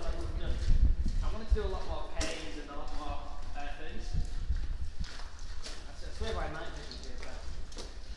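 Footsteps crunching on the gravel floor of a brick railway tunnel as people walk through it, with indistinct voices talking.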